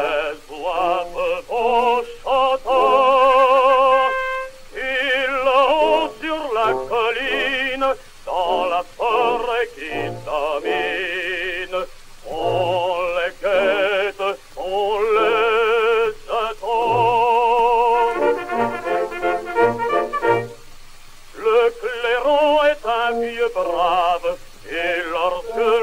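A man singing a French song in a dramatic operatic style with wide vibrato, in phrases with short breaks between them. It is played from an early 78 rpm disc, and the sound cuts off above about 4 kHz.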